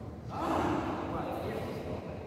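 A person's breathy vocal outburst, like a gasp or an exhaled exclamation, lasting about a second.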